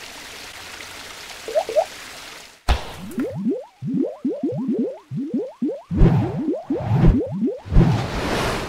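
Sound effects for an animated paint-splash logo. A steady hissing whoosh runs for about two and a half seconds, then a quick run of short rising bloops follows, about four a second, with three deep thuds a second apart near the end.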